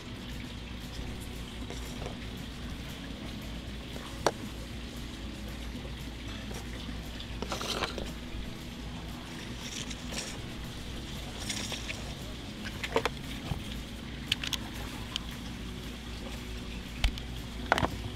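Faint handling sounds of waxed whipping twine being pulled off its spool and cut to length: a few scattered small clicks and rustles over a steady low background rumble.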